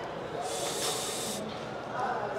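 A person's sharp hissing breath, about a second long, as a lifter braces under a loaded barbell before a heavy squat.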